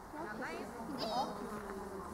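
An insect buzzing close by, its pitch wavering up and down, with a short high-pitched sound about a second in.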